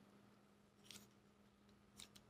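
Near silence: room tone with a faint steady hum and one faint click about a second in.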